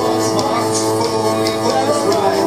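Rock band playing live at full volume: guitar and bass holding a sustained chord over drums, with cymbal hits every few tenths of a second.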